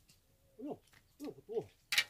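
Three short hooting calls, each sliding steeply down in pitch, the last two close together; just before the end, a sudden loud splash-like burst.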